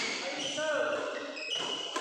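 Badminton rally: sharp racket strikes on the shuttlecock, one about a second and a half in and another just before the end, with shoes squeaking on the court mat and players' voices calling.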